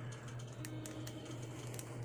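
Faint clicks and rubbing of a plastic action figure's shoulder joint being turned by hand, over a steady low hum.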